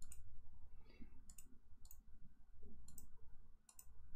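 Faint computer mouse clicks, a few scattered clicks and quick pairs of clicks, with a low room hum underneath.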